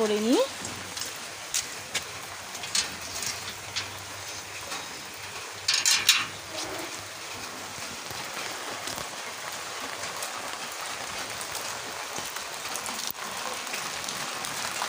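Steady rain falling, an even hiss. A few small clicks come in the first seconds, and a brief louder noise comes about six seconds in.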